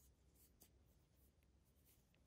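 Near silence, with the faint rustle and a few small ticks of a crochet hook pulling yarn through stitches.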